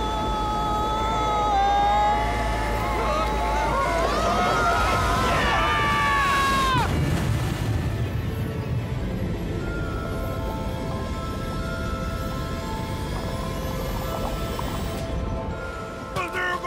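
Animated-cartoon voices screaming in one long yell as a raft goes over a waterfall, over a low rush of water; the screams rise and then fall away in a downward glide about seven seconds in. Then long held music notes, with a slow rising high sweep near the end.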